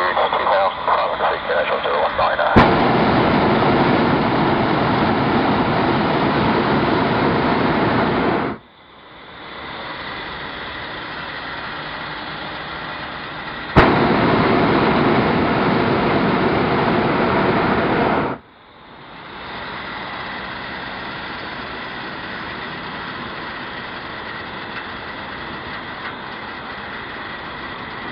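Hot air balloon burner firing twice. Each blast opens with a click, runs about five to six seconds, then cuts off sharply, with a quieter steady noise in between.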